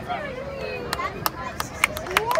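A lull in the marching band's music: people's voices with a few sharp clicks scattered through it.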